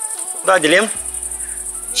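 Crickets chirping in a continuous high, finely pulsing trill.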